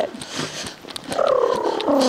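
A horse blowing out through its nostrils in a fluttering exhale. It starts about a second in and falls slowly in pitch.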